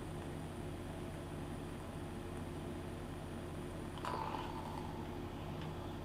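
A person taking a long drag on an electronic cigarette and then exhaling the vapour: faint breath sounds, with a soft, breathy exhale beginning about four seconds in, over a steady low electrical hum.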